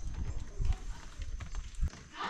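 Dull low knocks and handling noise as a bar clamp's screw handle is turned tight against a wooden box glue-up.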